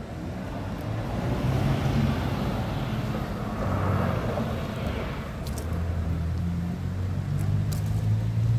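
A car driving past on the street, its tyre noise swelling to a peak about four seconds in and then fading, over a low engine hum.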